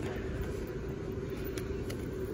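Steady low rumble of a shop's background noise with a faint constant hum, and no clear event.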